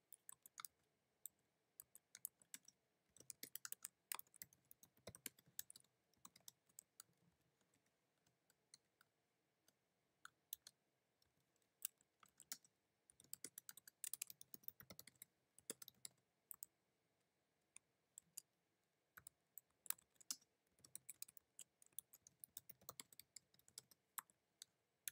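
Faint typing on a computer keyboard: quick runs of keystrokes broken by short pauses, as lines of code are entered.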